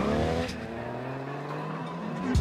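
Car engine revving: it comes in suddenly and loud, its pitch climbs over the first half second, then it holds a steady drone.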